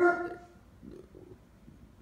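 A man's voice trails off on a drawn-out syllable. It is followed by quiet room tone with a faint low sound about a second in.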